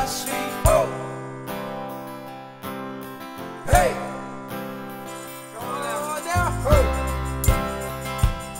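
Music: acoustic guitar strumming an instrumental passage between sung lines, with a strong chord struck every few seconds. A deep bass part comes in about six seconds in.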